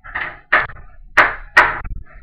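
A person farting: about four short blasts in quick succession, each starting sharply and trailing off.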